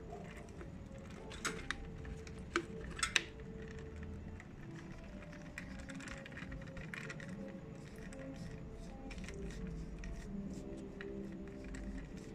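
Faint music plays throughout. Over it come a few sharp clicks and cracks of an empty plastic bottle being cut and bent, the loudest pair about three seconds in.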